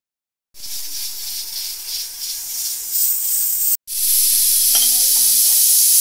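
Steam hissing steadily from the weight valve of an aluminium pressure cooker cooking under pressure on a high flame. The hiss breaks off for a moment about two-thirds of the way through and comes back louder.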